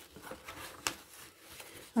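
Faint rustling of paper sheets being lifted out of a cardboard box, with one sharper crackle partway through.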